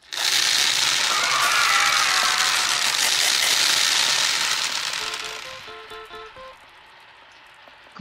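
A mass of small plastic balls spilling out of a bottle and rattling and bouncing across a hard tabletop. The rattle starts suddenly and loudly, then dies away over a few seconds. A short jingle of a few high notes plays as it fades.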